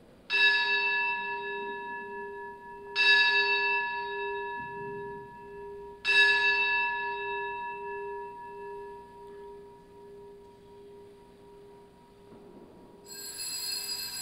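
An altar bell struck three times, about three seconds apart, each strike ringing on and fading slowly. The bell marks the elevation of the chalice at the consecration of the Mass. A softer, higher ring comes in near the end.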